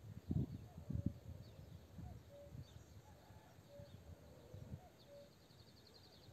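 A bird repeats a single short note at one steady pitch about every second and a half, with a faint, rapid high trill near the end. Two low thumps in the first second are the loudest sounds.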